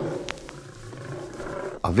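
A lion's roar answering a greeting: a rough, noisy roar that is loudest at the start and fades away over nearly two seconds.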